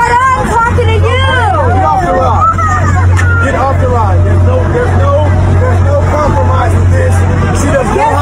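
Several people's voices talking over one another in a jumble, with a steady low hum underneath that drops out briefly now and then.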